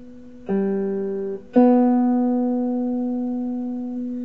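Electric guitar playing a major third as two single notes on the fourth string: the root G at the fifth fret, stopped after about a second, then the B two whole steps higher, which rings out and slowly fades.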